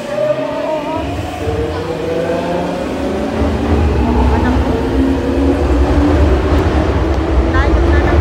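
Electric commuter train at a subway platform: its traction motors whine in several tones that shift in pitch, over a low rumble that sets in about a second in and grows louder.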